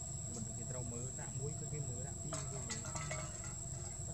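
Steady high-pitched drone of insects chirring, over a low rumbling background with faint distant voices, and a short run of small clicks and rustles about two and a half seconds in.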